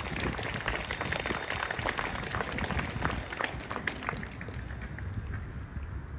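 Crowd applauding: a dense patter of hand claps that thins out and dies away about four to five seconds in.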